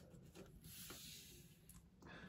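Faint rubbing and scraping of a finger and plastic building bricks against a tabletop, with a couple of light clicks.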